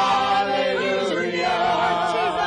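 Gospel praise team singing together in church, several voices holding long notes, one line wavering with vibrato in the second half.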